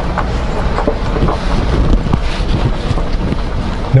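Jeep driving slowly on a gravel road, heard from inside the cab: a steady low engine and tyre rumble with light crunches from the gravel, and wind buffeting the microphone.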